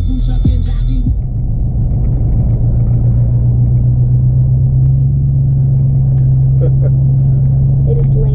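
Steady low rumble of a moving car heard from inside the cabin. Rap music with bright highs plays over it until about a second in, then cuts out.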